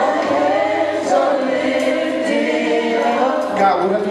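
Gospel choir singing, with sustained instrumental chords and a low bass line under the voices.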